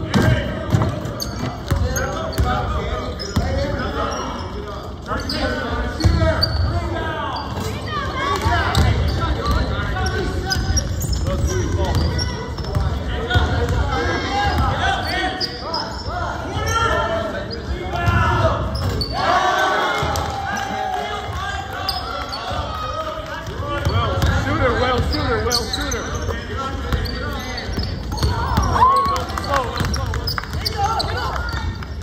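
Basketball being dribbled on a hardwood gym floor, with repeated bounces, under players' voices calling out during play, all echoing in a gymnasium.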